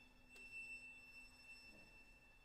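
Near silence in an orchestral recording: only a faint high held tone, with a low note dying away late on.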